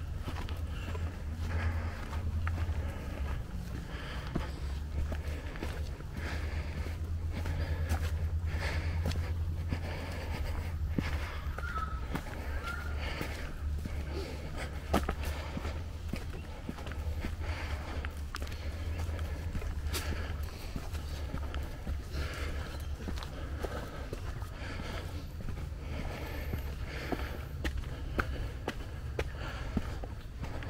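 Hikers' footsteps on a dirt and leaf-litter forest trail, an irregular run of soft steps at a walking pace, over a steady low rumble on the microphone.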